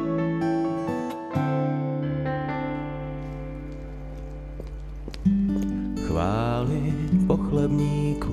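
Background soundtrack music: slow, held chords with acoustic guitar, swelling into a louder new phrase about five seconds in.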